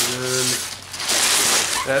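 Crumpled kraft-paper packing rustling and crinkling inside a cardboard box as the box is handled and tipped. The loudest crinkling comes about a second in. A man's brief drawn-out "uh" is heard at the start.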